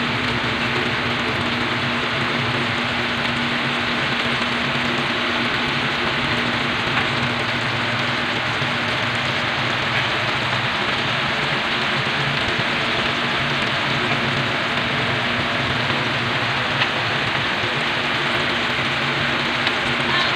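Pork and banana pieces sizzling steadily in a hot pan as the stofado sauce cooks down to a thick glaze.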